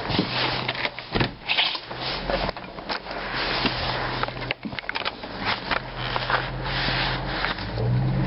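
Camera handling noise: cloth rubbing and scraping against the microphone with scattered knocks while the camera is carried, over a low steady hum.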